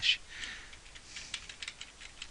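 Faint computer keyboard keystrokes: several light, irregularly spaced clicks.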